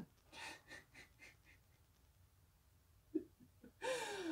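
A woman's soft, breathy chuckles: a few short puffs of breath that fade away, a quiet pause, then the start of a laugh near the end.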